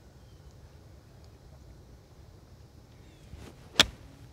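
Golf wedge striking a ball on a fairway: one sharp, crisp impact near the end, after quiet outdoor background.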